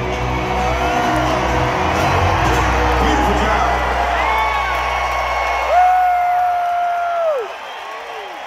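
Live band holding out the final chord of a song, heard from within a stadium crowd that cheers and whoops over it. The band's sound stops about five and a half seconds in, leaving the crowd cheering with a few long held whistles or yells.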